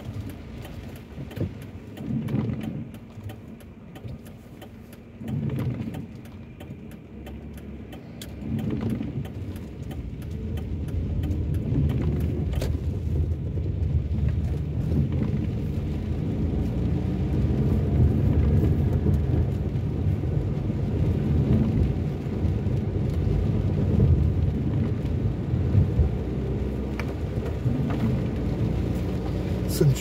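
Inside a car on wet roads: engine and tyre noise that comes in short swells at first, then grows louder and steady from about ten seconds in as the car drives on.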